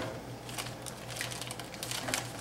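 Plastic meat wrapper crinkling in faint, scattered crackles as gloved hands pick at it and peel it open, over a low steady hum.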